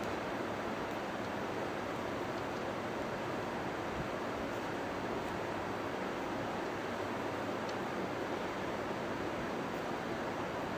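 Steady, even hiss of background noise that does not change.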